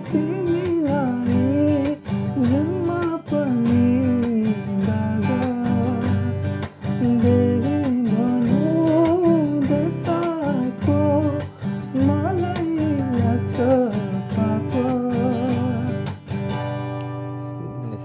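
Acoustic guitar strummed down and up through G, Cadd9 and G chords while a voice sings the melody over it. The singing stops near the end, leaving the strummed chords ringing.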